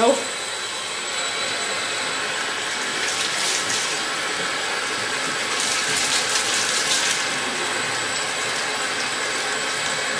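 Bathtub tap running steadily into a tub of shallow water, with a couple of louder, splashier stretches as a hand moves under the stream.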